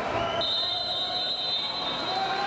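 A high-pitched signal tone held for about two seconds as the match clock reaches zero, marking the end of the wrestling bout, over steady crowd noise in the hall.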